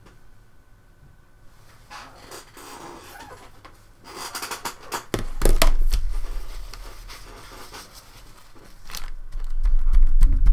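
Sheets of watercolor paper being handled and moved about on a desk: rustling and scraping with sharp clicks, and a low thump about five seconds in. Near the end a fingertip starts rubbing dried masking fluid off the painted paper, a scratchy rubbing that grows louder.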